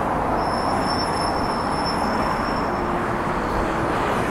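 Steady road traffic noise from a busy main road, an even continuous rumble, with a faint high whine from about half a second in to about three seconds.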